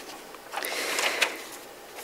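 Sheets of paper rustling as pages are handled and turned, starting about half a second in and lasting around a second, with a couple of faint clicks.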